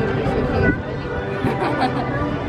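Chatter of people's voices around, talking over one another, with no single clear speaker.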